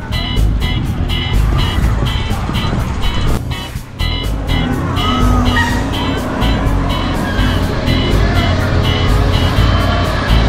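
Loud music with a fast, steady beat and heavy bass, dipping briefly about four seconds in.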